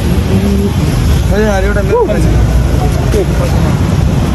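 Steady low rumble of street traffic beside a road, with a man's voice calling out briefly in the middle.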